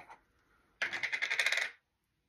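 A rapid run of small hard plastic clicks lasting about a second, starting a little under a second in: the plastic lid of a Neutrogena Hydro Boost water-gel jar being twisted on its threads.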